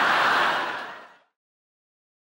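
Studio audience laughter after a sitcom punchline, fading away a little over a second in.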